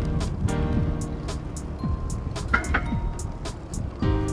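Background music with a steady beat and held chords.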